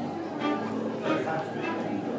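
Several pieces of live acoustic music sounding at once, an upright piano among them, mixed with people talking. Short pitched notes overlap one another with no single steady tune.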